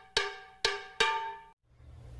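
A short jingle of struck, bell-like notes. Three notes sound in quick succession, each starting sharply and ringing out, and the jingle ends about one and a half seconds in.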